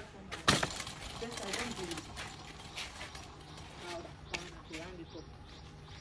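Faint, low voices in the background, with a sharp knock about half a second in and a few lighter clicks later.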